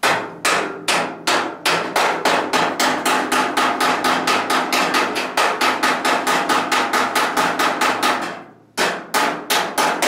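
Rapid hammer blows on the sheet-steel edge of a 1970 Dodge Challenger fender, about three or four strikes a second, each one ringing the steel. The hammering stops briefly near the end, then starts again.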